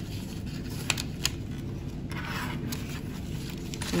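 A sheet of paper being handled and pressed down by hand, with a couple of small sharp clicks about a second in and a brief rustle about two seconds in.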